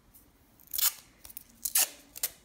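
Two short rasps about a second apart as a strip of masking tape is pulled off its roll and cut, ready for wrapping a homemade stick paintbrush.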